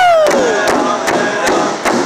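A drum group singing in high, strained voices over steady beats on a large rawhide powwow drum. In the first half-second a lead voice slides down in pitch at the end of a phrase, then the other voices and the drumming carry on.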